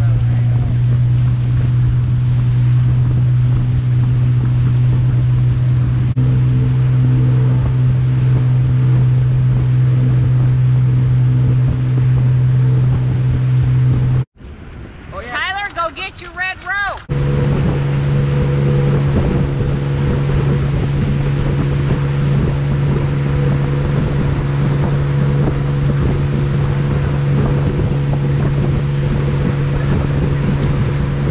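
Motorboat engine running steadily under load while towing riders, a constant low drone mixed with the rush of wake water and wind on the microphone. A quieter stretch of about three seconds in the middle breaks the drone, which then returns at a slightly higher pitch.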